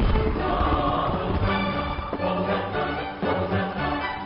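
A choir singing held, sustained notes over backing music.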